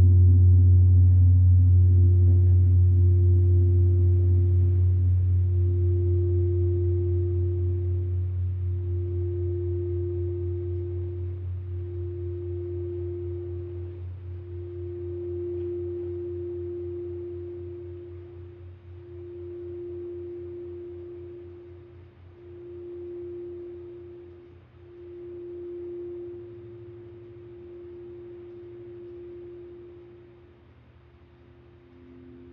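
A crystal singing bowl sung with a wand, one clear ringing tone that swells and briefly dips every two to three seconds. Under it, the deep hum of a large gong struck just before fades away over the first twenty seconds or so.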